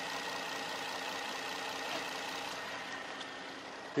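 Renault Samsung SM7's 2.5-litre V6 petrol engine idling steadily with the bonnet open, a quiet and smooth idle.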